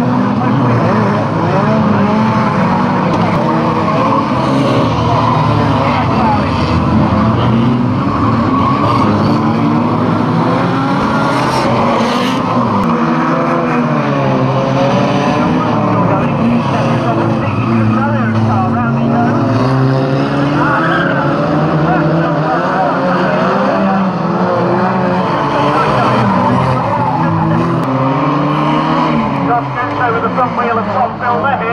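Several banger racing cars' engines running and revving together, their pitches rising and falling throughout as the cars race round the track.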